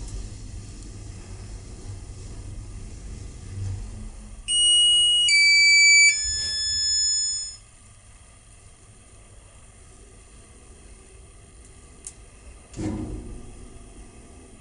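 Electric passenger lift car travelling up with a low running hum, then, about four and a half seconds in, a three-tone descending arrival chime as the car reaches the floor. After the chime the car is quieter, and a thump comes near the end.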